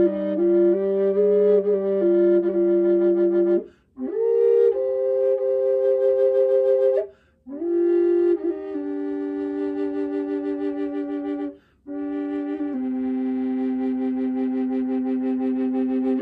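Contrabass G/C Aeolian double-chambered drone flute of aromatic cedar and buckeye burl played as a held drone under a melody, two notes at once, in four phrases broken by short breaths. The drone's pinky hole is half covered to pull down the sharpness of its alternating upper drone note.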